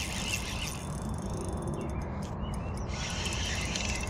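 Outdoor ambience: a steady low background noise, with faint insect buzzing and a few brief bird chirps in the middle.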